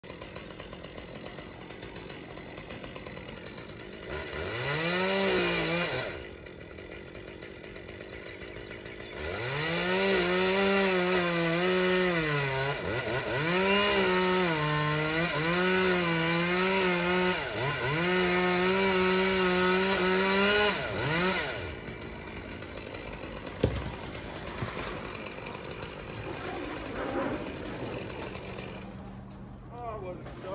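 Chainsaw revving up briefly about four seconds in, then running at full throttle in a long cut of about twelve seconds, its pitch dipping and rising again several times, as it cuts through the palm trunk below the crown. A single sharp knock follows a couple of seconds after the saw stops.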